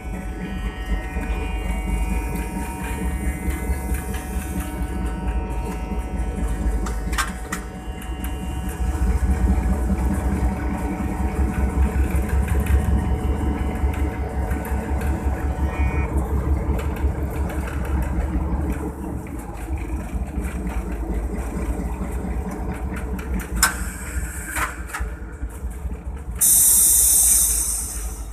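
PHA-20 diesel-electric locomotive running, heard from inside its cab: a deep, throbbing engine rumble under the noise of the moving train, with a few sharp knocks. Near the end comes a loud hiss lasting about a second.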